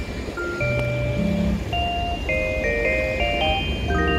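Background music: a slow melody of held notes, with several notes sounding together in the middle.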